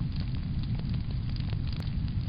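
Fire sound effect: a steady low rumble of flames with small crackles scattered through it, accompanying a burning-frame animation.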